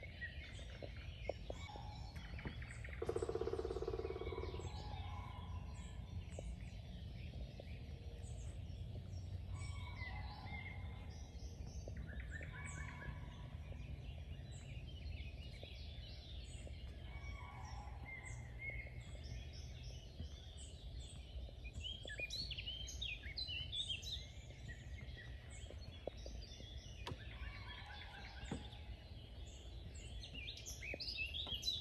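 Several songbirds singing in wet bog woodland: many short, high chirps and trills, busiest in the second half. A brief louder, lower-pitched sound comes about three seconds in, over a faint steady low rumble.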